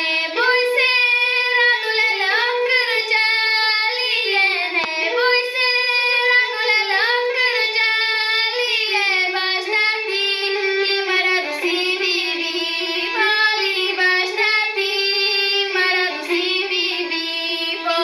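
A young girl singing a Bulgarian folk song from the Shop folklore region in a loud, open-voiced style, the melody bending and ornamented between held notes.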